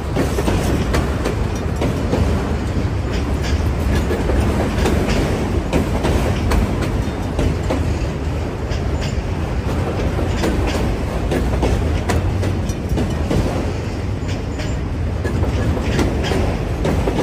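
Freight train autorack cars rolling past close by: a steady low rumble of steel wheels on rail, broken by frequent irregular clicks and clacks of wheels over the rail joints.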